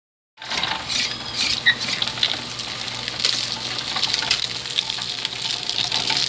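Homemade electric sugarcane mill crushing a cane stalk between its ribbed steel rollers: a steady crackling and snapping of the crushed cane over a low motor hum, with the juice gushing into a bowl.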